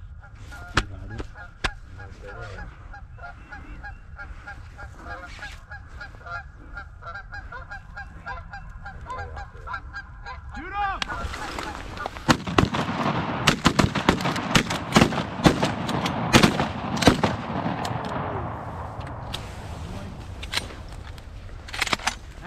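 Canada geese honking, softer and steady at first. About halfway through it swells into a loud, dense chorus of many overlapping honks, then eases off near the end.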